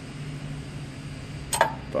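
A steady low hum, with one sharp click about one and a half seconds in.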